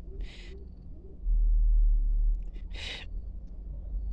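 Cats hissing at each other over food: a short hiss at the start and a louder one about three seconds in. A low rumble on the microphone is the loudest sound, from about one to two seconds in.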